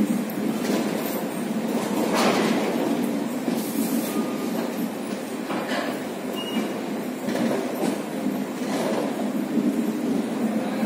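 Passenger coaches of an express train running through the station without stopping: a steady rumble of wheels on rail, with a louder clack every second or two.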